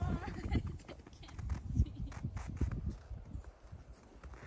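Footsteps crunching on snow in slippers, a run of uneven crunches, over a low rumble of wind on the microphone.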